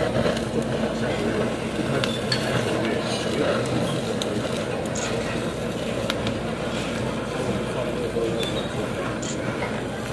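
Handheld kitchen blowtorch running steadily as its flame sears the surface of slices of slow-cooked beef, with a few clicks of metal tongs.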